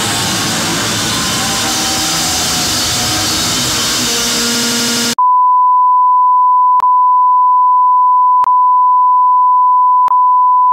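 Loud rock music that cuts off abruptly about five seconds in, replaced by a single steady high beep like a test tone, interrupted by two brief clicks.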